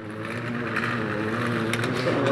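An engine running with a steady hum that grows gradually louder.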